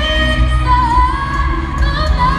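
Female pop singer singing a slow R&B song live with band accompaniment, amplified through an arena sound system: long, gliding held notes over heavy bass.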